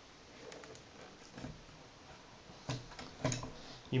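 Faint knocks and scraping as the Atomic Reactor amplifier's metal chassis is pulled out of its cabinet, with a couple of sharper clicks near the end.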